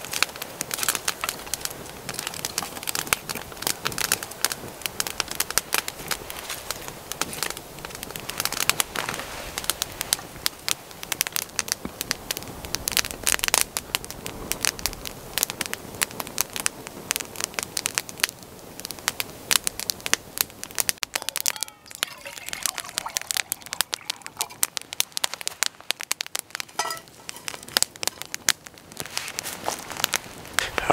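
Small wood campfire of dry sticks crackling with dense, irregular pops as it burns up from a freshly lit tinder bundle, not yet down to a bed of embers. The popping thins out somewhat in the last third.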